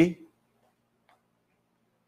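A man's voice finishing the word "see?", then a pause of near silence with only a faint steady low hum.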